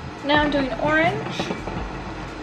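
A woman's voice, two brief vocal sounds in the first second, over steady background noise.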